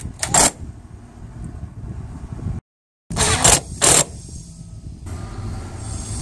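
Cordless drill with a 5/16 nut-driver bit running in short bursts to tighten the screw of a stainless hose clamp on PVC pool pipe: two quick bursts near the start and two more about three seconds in.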